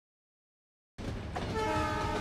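A train's horn sounding over the low rumble of a train crossing a bridge, starting suddenly about a second in after silence.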